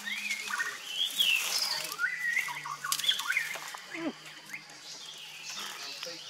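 Small birds chirping in short rising and falling calls, over rustling brush and a few sharp clicks and snaps as branches are cut with a short knife.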